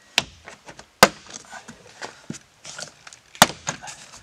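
Plastic retaining clips of a Subaru Outback door trim panel popping loose as the panel is pried off the door: three sharp snaps, the loudest about a second in, with smaller clicks and rustling of the panel between them.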